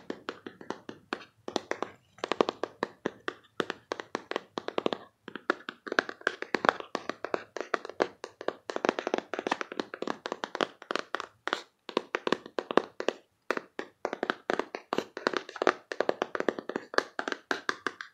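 Fingers tapping quickly on a cardboard card box, in fast runs of sharp taps with a few brief pauses, about five seconds in and again around twelve to thirteen seconds.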